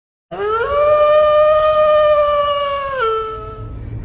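A wolf howl: one long call that rises quickly at the start, holds a steady pitch, then drops to a lower pitch about three seconds in and fades away.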